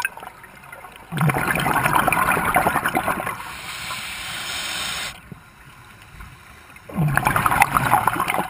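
Scuba regulator exhaust: two bursts of bubbling gurgle as the diver breathes out, about a second in and again near the end. The first burst is followed by a softer steady hiss.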